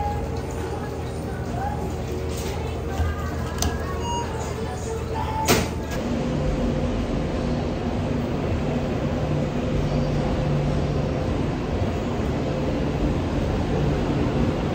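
Café ambience with faint background voices and a couple of sharp clicks, the louder one about five and a half seconds in. Then, from about six seconds in, the steady rumble and hum inside a running high-speed train carriage.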